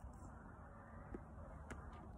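Near silence: faint outdoor background noise, a low rumble with two faint clicks in the second half.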